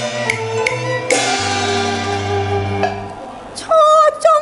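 Live Cantonese opera band playing an instrumental passage: three sharp percussion strikes in the first second, then long held notes that fade briefly. A woman's singing voice comes in, wavering and loud, near the end.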